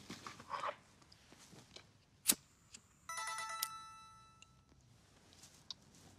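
A mobile phone's message alert: a quick run of bright chiming notes about three seconds in, ringing out for about a second. It is preceded by a single sharp click.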